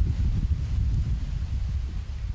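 Wind buffeting the microphone: a steady low rumble with faint rustling of dry grass and leaves, and no distinct events.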